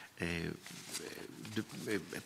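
A man's hesitant 'uh', then a low, drawn-out hum as he searches for his next words, with faint rustling of the sheets of paper he is handling.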